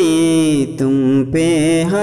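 A man singing an Urdu salat-o-salam, a devotional salutation to the Prophet, in long held notes that bend gently in pitch, with two short breaks for breath.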